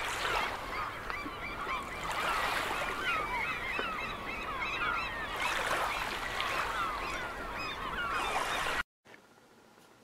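A flock of birds calling, with many short, overlapping calls over a steady hiss. It cuts off suddenly about nine seconds in, leaving faint room tone.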